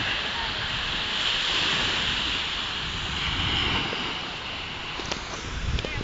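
Steady sea surf washing on the shore mixed with wind rumbling on the phone's microphone, with a few sharp knocks from handling near the end.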